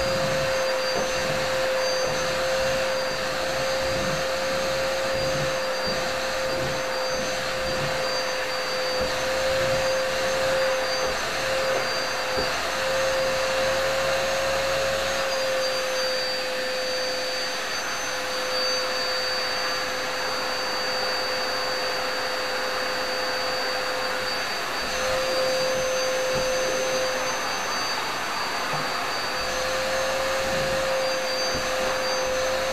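Bauer UVF-01 water-filter vacuum cleaner's 2000 W motor running steadily: a constant whine over a rush of air. The whine sags slightly in pitch about halfway through and picks up again near the end.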